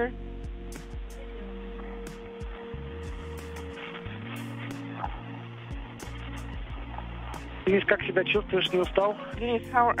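Open space-to-ground radio channel with a steady hiss and hum and faint scattered clicks, no one talking. Near the end a voice comes in briefly.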